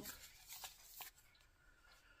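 Faint rustling and a few soft clicks of a paper card being opened and handled, mostly in the first second, then near silence.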